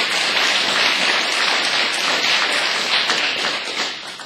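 Audience applauding: dense clapping from many hands, holding steady and then fading near the end.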